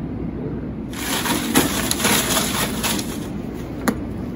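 Folded paper cards rustling and crinkling as one is drawn from a basket and unfolded, starting about a second in and lasting about two seconds, with a single sharp click near the end.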